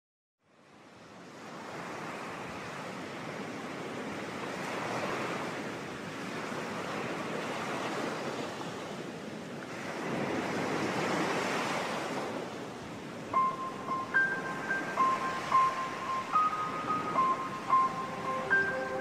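Ocean waves rolling in and breaking rhythmically, fading in from silence and swelling twice. About thirteen seconds in, a looping piano melody of short, high notes starts over the surf.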